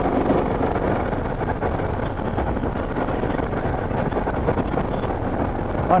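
Dual-sport motorcycle running at a steady cruising speed, its engine noise blended with wind rush on a helmet-mounted microphone.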